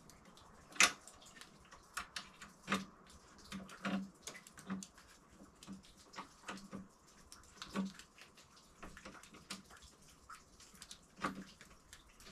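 Irregular light clicks and knocks of a 10 mm wrench working the bolts of a chainsaw holder mount on a snowmobile deck, with a few sharper clinks scattered through.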